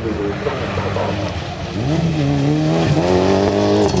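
Rally car's engine revving hard under acceleration on a gravel course, its note climbing sharply about two seconds in and holding high, with a brief dip near three seconds, growing louder as the car comes closer.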